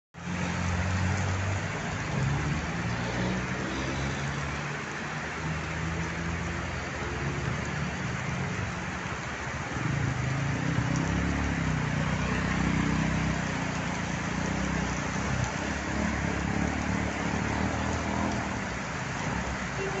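Heavy rain pouring steadily, with the engines of cars driving through the flooded street running underneath.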